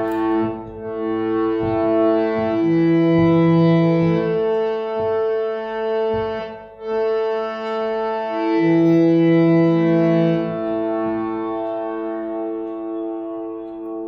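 Harmonium playing a slow practice phrase of sustained notes, each held for a second or two before stepping to the next. The sound breaks off briefly about seven seconds in, then resumes and fades away near the end.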